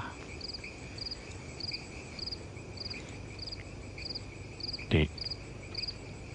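Crickets chirping at night: a short pulsed chirp repeating evenly, a little under twice a second, over a fainter steady insect trill. A brief breath sound comes about five seconds in.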